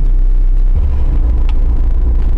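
Lada 4x4 (Niva) engine and drivetrain droning, heard from inside the cabin while driving. About a second in, the low drone steps up to a higher, stronger note and holds there.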